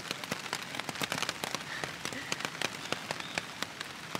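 Rain falling on a tent's fabric, heard from inside the tent: a dense, irregular spatter of drop hits over a steady hiss.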